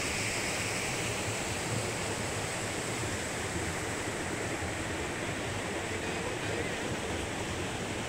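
Mountain stream running over a rocky bed: a steady, even rush of water.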